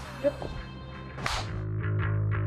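A short whoosh transition effect, one quick swish sweeping up and fading, a little over a second in, followed by background music with a low steady bass.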